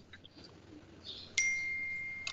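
A single high electronic ding, a computer notification chime, starting suddenly about one and a half seconds in and fading slowly.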